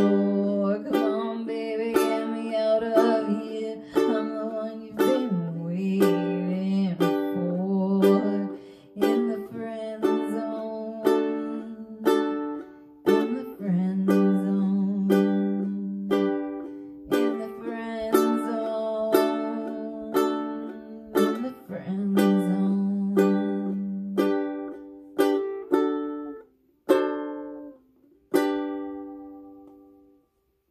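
Acoustic ukulele strummed in a steady rhythm of chords, closing the song. Near the end the strumming thins to a few single, spaced strums that ring out and fade.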